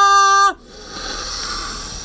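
A woman's voice holds a steady 'oh' that cuts off about half a second in. It is followed by a long, even, breathy hiss lasting about a second and a half: a deep sniff, drawing in the scent of a soy candle.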